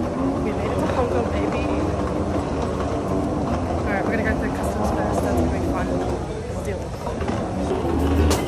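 A young woman talking over a steady low rumble.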